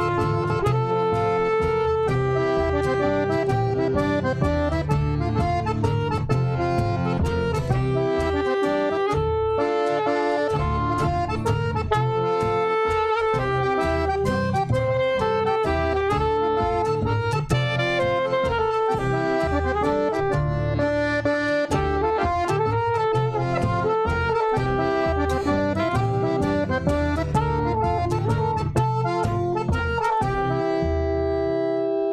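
Instrumental accordion music: a continuous melody of held, shifting notes over a bass line.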